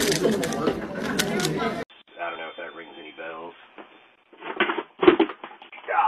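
Loud crinkling and crackling of a plastic snack wrapper being handled, which cuts off abruptly about two seconds in. A voice follows, then a few short loud bursts near the end.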